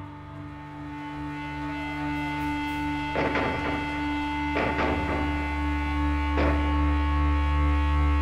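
Live punk rock band holding sustained electric guitar and bass chords in a steady drone, with a few drum and cymbal hits about three, four and a half, and six and a half seconds in, growing louder as it builds.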